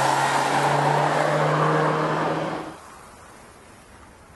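Mini Cooper convertible's four-cylinder petrol engine running steadily as the car drives by on a mountain road, its note rising slightly, over a broad rush of road and wind noise. The sound cuts off abruptly about two-thirds of the way through, leaving only a faint hiss.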